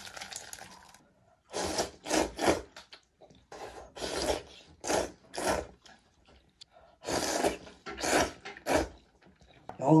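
A man slurping hand-rolled noodles in broth from a bowl: about ten loud, short slurps in clusters of two or three, starting about a second and a half in.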